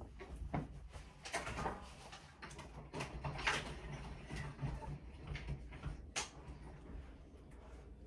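A quiet room with a few faint, scattered clicks and knocks over a low hum.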